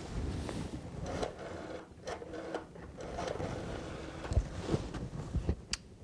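Handling noise of a corded telephone handset being picked up and held to the ear: irregular rustling, rubbing and light knocks, with clothing and a beanbag chair shifting.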